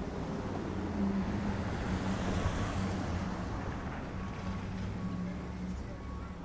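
Road traffic rumbling past on a city street, with a loud, high-pitched squeal lasting about a second about two seconds in, followed by several fainter, shorter high squeals.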